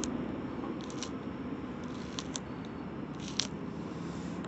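A few short, sharp clicks from a small knife cutting food held in the hand, over a steady background noise.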